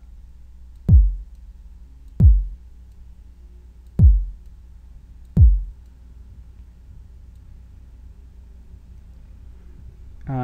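Four single electronic kick-drum hits from a virtual drum instrument, each a deep thud with a quick downward pitch drop. They fall unevenly over the first six seconds, like notes previewed one at a time as they are clicked and moved in a piano roll. A low steady hum lies underneath.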